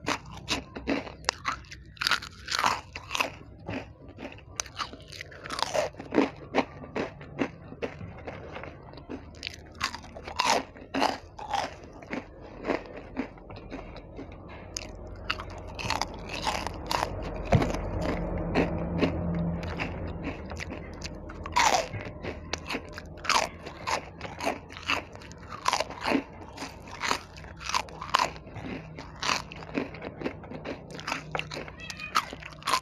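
A person biting and chewing crispy snacks: a long run of short, sharp crunches, one after another, with softer chewing between them.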